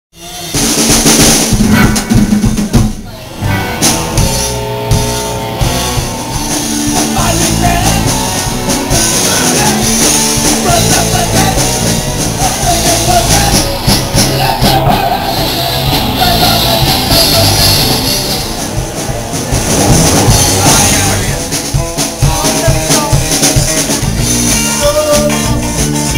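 A band playing loud, close-miked live music, with a drum kit's bass drum and snare driving under pitched instruments. It starts abruptly and runs on continuously.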